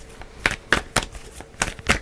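A tarot deck being shuffled by hand: an irregular run of sharp card snaps and clicks.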